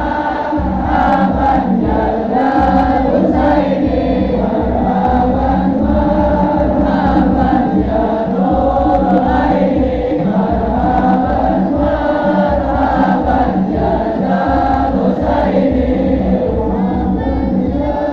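Many voices singing Islamic devotional chants (sholawat) together in chorus, with a steady beat underneath.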